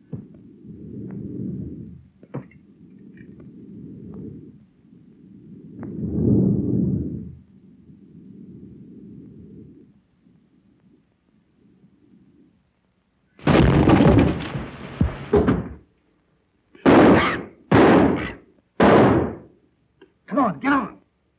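Low rumbling and shuffling noise, then a loud crash lasting about two seconds, followed by three short loud bangs about a second apart.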